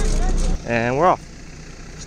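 Bus engine running, a steady low hum inside the cabin, which cuts off abruptly about half a second in. Then comes a short vocal sound rising in pitch, over a quieter background.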